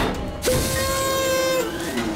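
Cartoon missile-launch effects: a click as a big button is pressed, then a rushing hiss under a loud held musical note, which drops to a lower note near the end.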